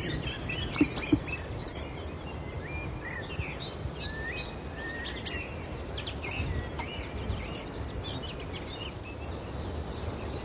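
Birds chirping and singing, many short calls scattered throughout, over a steady low outdoor background noise.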